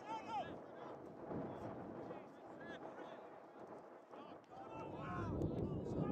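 Distant shouts and calls from rugby players on an open pitch. Wind rumbles on the microphone, growing louder near the end.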